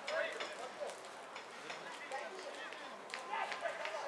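Voices calling and shouting on a football pitch, heard from a distance, with a few short sharp knocks among them.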